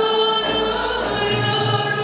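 Live Turkish folk music: a woman sings a held, ornamented note, backed by bağlama (long-necked lutes) and a choir.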